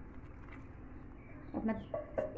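Faint steady background hiss with no distinct sound, then a woman starts speaking in Hindi/Urdu near the end.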